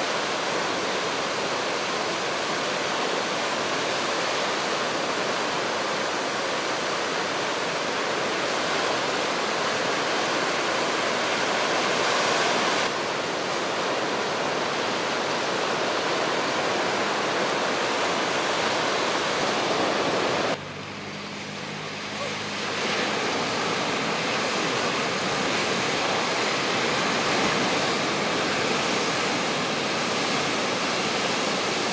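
Ocean surf breaking and washing ashore in a steady rush of noise. About two-thirds of the way through, the sound suddenly drops quieter for a couple of seconds, then comes back to full level.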